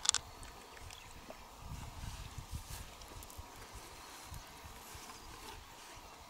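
Faint handling of opened freshwater mussel shells: one sharp click right at the start, then scattered small clicks and taps, with some low rumble about two to three seconds in.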